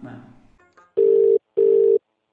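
Telephone ringback tone: two short bursts of a steady low tone with a brief gap, the double-ring pattern heard while a phone call rings through.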